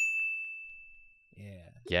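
One high, bell-like ding sound effect struck once at the end of a spoken countdown, ringing and fading over about a second and a half.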